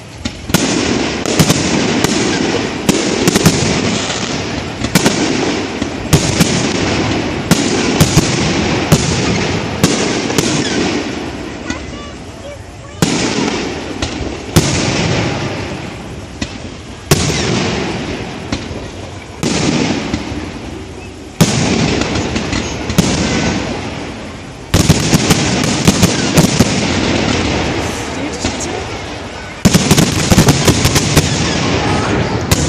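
Fireworks display: aerial shells bursting in quick succession, sharp bangs about every second, each followed by a fading tail, with fresh loud volleys several times in the second half.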